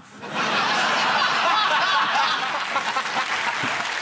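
Studio audience laughing and clapping in response to a joke, starting abruptly about a quarter second in and easing slightly toward the end.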